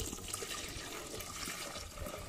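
Fresh cow's milk poured in a steady stream from a plastic tub into an enamel pot, splashing into the milk gathering in the pot.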